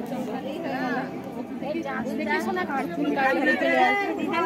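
Chatter of several people talking over one another in a crowd.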